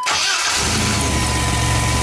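A GMC 4.3-litre Vortec V6 idling steadily, its low running sound settling in about half a second in. A thin steady whine runs over it.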